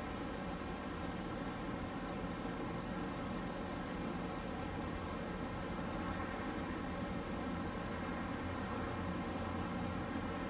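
Steady rushing noise with a fluctuating low rumble: wind on the microphone outdoors.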